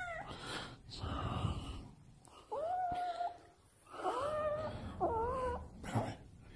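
Domestic cat meowing. The end of one meow comes right at the start, then three meows follow about a second apart in the second half, the last one wavering up and down.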